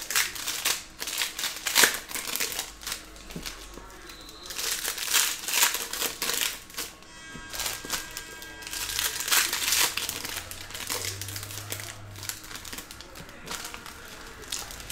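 Foil wrappers of 2022 Panini Phoenix Football trading-card packs crinkling as packs are handled and ripped open and the cards shuffled out. The noise comes in repeated bouts of a second or two.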